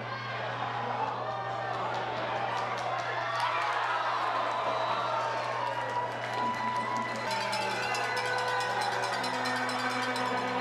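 Spectator crowd cheering and shouting, with music playing along and a steady low hum underneath. The crowd swells at the start and stays loud.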